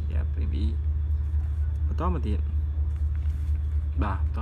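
Steady low rumble with two short snatches of a voice, about half a second in and about two seconds in.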